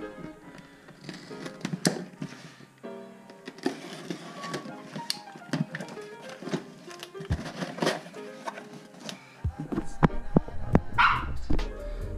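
A dog whining and barking over music. Sharp clicks and cardboard scrapes come from a cardboard parcel's tape being slit and its flaps pulled open.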